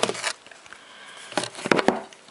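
Cardboard box-set packaging and a booklet being handled close to the microphone: a brief rustle at the start, then a few quick knocks and scrapes near the end.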